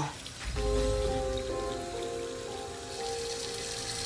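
Soft background score: slow, sustained synth notes that change pitch now and then over a low drone and a steady hiss. It comes in about half a second in.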